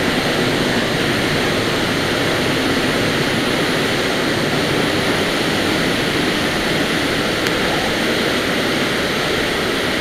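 Waterfall running high, plunging into a pool in a narrow rock gorge: a loud, steady rush of falling water.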